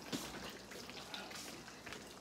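Large pot of palm-oil okra soup simmering on an electric stove: a faint, steady bubbling hiss with a few light ticks.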